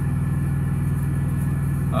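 A semi-truck's diesel engine idling steadily, heard from inside the cab as a low, even drone.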